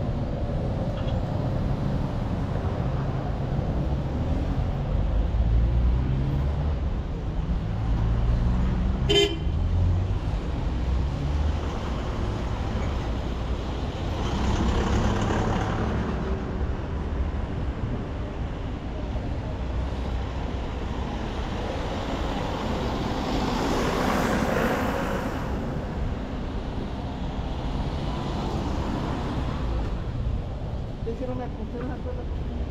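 City street traffic: a steady low rumble of vehicle engines, with a brief horn toot about nine seconds in. Two vehicles pass close by, the noise swelling and fading around the middle and again near the end.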